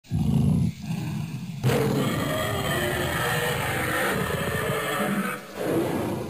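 A loud, rough roaring sound effect under an animated logo. It surges in several waves, with a strong swell about a second and a half in, and keeps going to the end.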